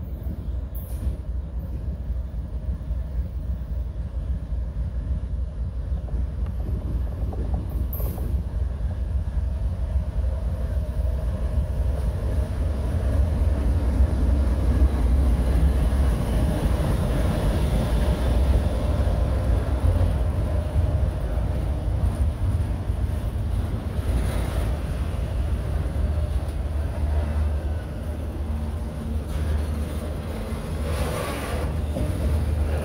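Norfolk Southern diesel locomotive easing slowly past at close range, its engine rumble swelling to its loudest about halfway through, then autorack freight cars rolling by.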